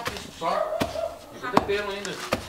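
Wooden pestle pounding roasted peanuts, flour and rapadura in a wooden pilão to make paçoca: three dull strikes a little under a second apart, the last the loudest.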